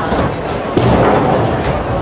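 A bowling ball thuds onto the lane a little under a second in and rolls away, over the steady din of a busy bowling alley.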